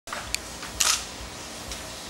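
Single-lens reflex camera shutter firing a few times: short sharp clicks, the loudest a little under a second in.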